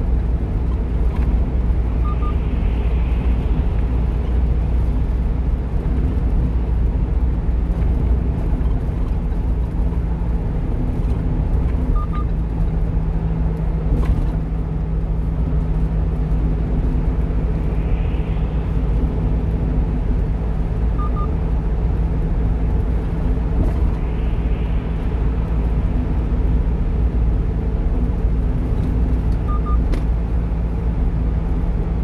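Steady engine drone and tyre and road rumble inside the cab of a 1-ton truck cruising at expressway speed. A faint short double beep recurs several times.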